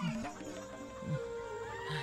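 Background music score: held steady notes with short downward pitch slides, one near the start and one about a second in.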